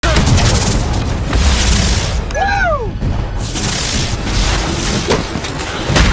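Fireworks going off in a dense barrage: repeated booms over a low rumble and crackle, with a falling whistle about two and a half seconds in and another near the end.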